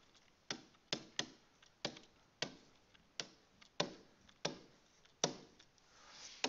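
Faint sharp ticks of a stylus tip striking a tablet screen during handwriting, about ten taps spaced unevenly, roughly half a second apart.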